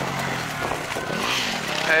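Enduro motorcycle engine idling, with one short rev that rises and falls about a second in.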